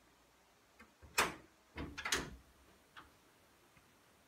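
Chevelle hood being unlatched and raised: a sharp metal clunk about a second in, two or three more clunks close together around two seconds, then a couple of light clicks.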